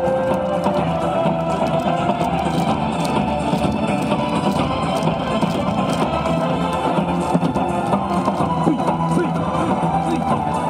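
Loud, upbeat yosakoi dance music with guitar and a steady beat, playing without a break.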